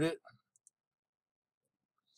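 The last word of a man's speech, then a faint double click of a computer mouse about half a second in, followed by near silence.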